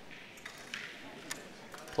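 Crokinole discs clicking against each other on a wooden board: a few faint, sharp clicks, the clearest about three-quarters of a second and a second and a quarter in, over low room noise.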